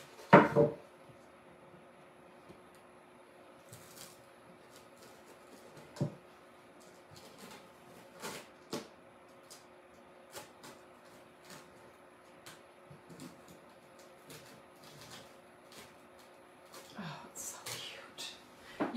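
A hard knock as a wood craft panel is set down on the table in the first second, then quiet handling: scattered light taps, clicks and rustles as a plastic stencil is worked and peeled off the board. A faint steady hum of room tone runs underneath.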